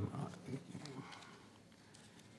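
Faint, distant murmur of voices in a large hall during the first second, fading to quiet room tone.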